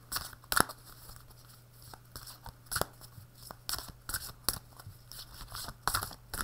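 A tarot deck being shuffled by hand, cards and cloth rustling, with irregular sharp snaps a second or so apart.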